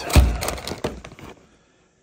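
A clear plastic bag around a spool of filament crinkling and crackling as it is picked up and handled, with a low thump near the start. The crinkling stops about a second and a half in.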